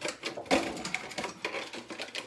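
Thin plastic sheet crackling and crinkling as it is handled by hand, with a sharper crack about half a second in.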